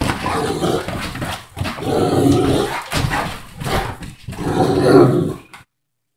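Great Dane growling and grumbling in about four rough bouts with short breaks, its protest at being told to get off the couch.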